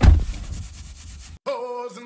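A sudden loud burst with a low rumble that cuts off abruptly, then music from the car radio begins about a second and a half in, with held sung notes.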